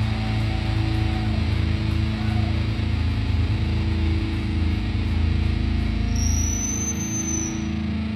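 Live band's distorted electric guitar and bass holding a droning, sustained chord that rings out with no drum beat. About six seconds in a high whistling tone comes in, rises slightly and then fades.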